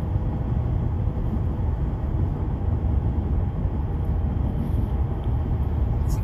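Steady low road and drivetrain rumble inside the cab of a Ford Super Duty pickup cruising at freeway speed, with no sudden knocks or changes.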